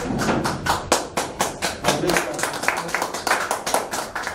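A small audience clapping, many uneven hand claps a second, with a few voices underneath.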